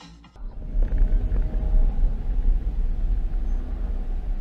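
Steady low rumble of a car's engine and tyres on the road, picked up by a dashcam microphone inside the cabin. It starts about half a second in.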